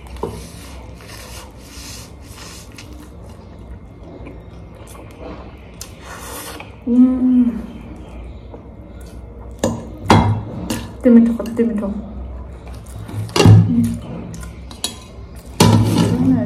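A person eating noodles with a fork: slurping and chewing in the first half, then the fork scraping and knocking on the plate, mixed with several short loud hums and a few words in the second half.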